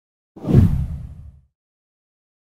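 A single deep whoosh transition sound effect that swells in about a third of a second in, peaks quickly, then fades out by about a second and a half.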